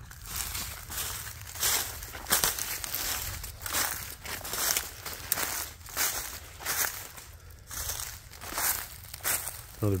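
Footsteps through dry fallen leaves on a forest floor, a steady walking pace of about two crunching steps a second.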